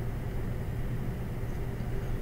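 Steady low hum with faint hiss: background noise of the recording, with no speech.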